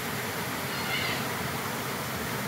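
Small waterfall pouring into a shallow pool, a steady rush of falling water, with one brief high-pitched vocal call about a second in.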